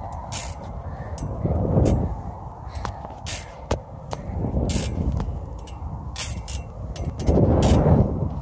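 Wind rushing over a handheld phone's microphone as a playground swing moves back and forth, swelling about every three seconds with each arc. Scattered faint clicks run through it.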